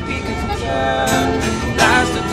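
Two acoustic guitars strummed together in a live duet, playing chords, with a sharp strum about a second in and another near the end.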